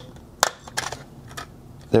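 Scissors snipping through the black lead wire of a power bank's lithium battery: one sharp snip about half a second in, then a fainter click.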